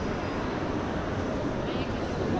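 Indoor ambience of a large hall: indistinct voices of people over a steady background hum.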